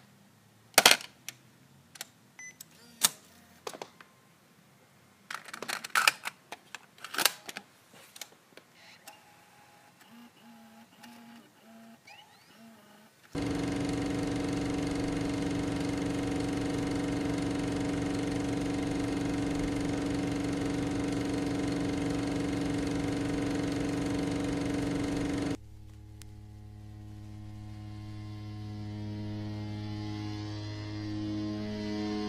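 Sharp clicks and clacks of a hand handling the buttons and body of a Sony VX camcorder, a few at a time over the first dozen seconds. Then a loud, steady electric hum with hiss starts abruptly, and after about twelve seconds it cuts to a quieter layered hum that slowly swells.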